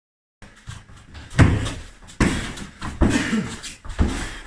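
Strikes landing on padded strike shields: three loud thuds about a second apart, with smaller hits between.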